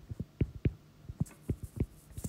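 Stylus tapping and stroking on a tablet screen while writing: a run of irregular short taps, several a second, with a few faint scratchy strokes.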